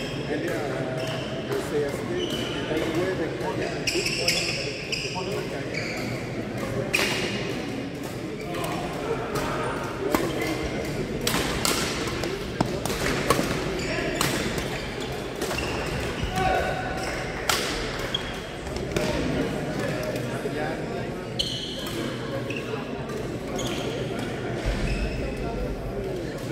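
Badminton rally play: sharp racket strikes on a shuttlecock at irregular intervals, ringing in a large, echoing gym hall, over a steady murmur of players' voices.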